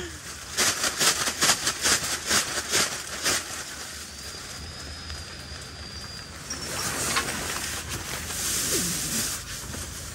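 Camping gear being handled: a quick run of clicks and knocks in the first few seconds, then a longer rustle near the end as sleeping bags and pillows are pulled out.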